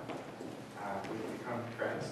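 A man's voice speaking at a microphone in short, halting phrases with pauses between them.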